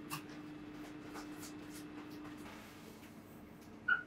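Pencil scratching across paper in short, light strokes as a flower sketch is drawn, over a faint steady hum that fades out about two-thirds of the way through. A brief sharp tick comes just before the end.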